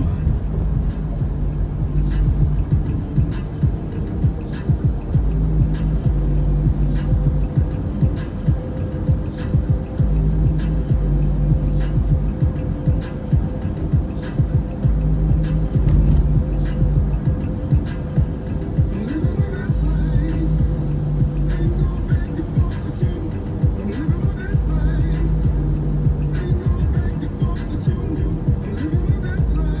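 A song with a steady beat and deep bass playing on the car radio, heard inside the car.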